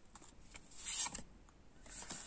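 An oracle card drawn from the deck and slid onto a cloth-covered table: one brief rustling scrape about a second in, otherwise quiet.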